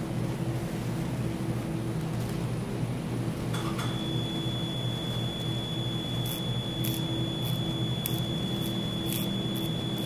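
A steady high-pitched electronic tone from operating-room equipment comes on about a third of the way in and holds, over a low steady hum. Faint ticks repeat about every half second in the second half.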